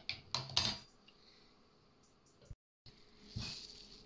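A metal spoon clinks a few times against a glass jar and dish. After a brief cut, plastic cling film crinkles as it is pulled out to cover the jar.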